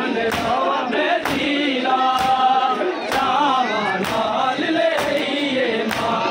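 Men chanting a noha, a Shia lament, as a group, with a sharp strike of hands on bare chests (matam) about once a second, keeping time with the chant.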